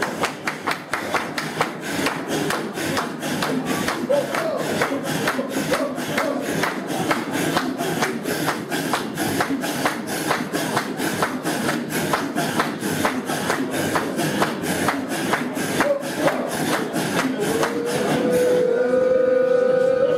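A group of men chanting a Sufi hadra dhikr in strong, rhythmic breaths, about two to three forceful exhalations a second, steady throughout. Near the end a single voice holds a long sung note over the breathing.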